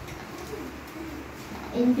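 A faint low call or murmur, gliding down in pitch, about half a second in, then a girl's voice starts speaking loudly through a microphone near the end.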